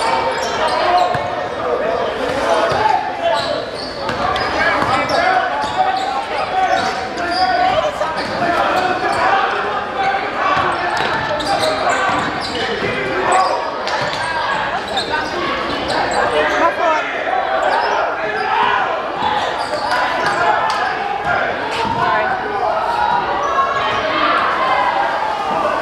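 Live basketball game sound in a gymnasium: many voices from crowd and players talking and shouting at once, with a basketball bouncing on the hardwood court and short sharp knocks throughout.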